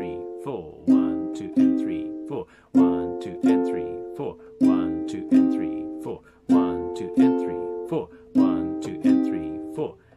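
Classical guitar strummed in a repeating rhythm on three-string F and C minor chords: two strong down-strums and a lighter one in each group of about two seconds. Each group is cut off sharply by the strumming hand stopping the strings.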